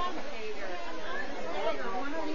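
Many voices talking over one another: steady, indistinct group chatter.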